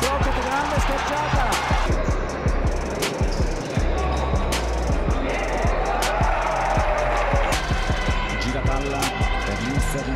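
Basketball arena sound during play: crowd noise with music over it and a deep, steady bass, dotted with short sharp knocks such as the ball bouncing on the court.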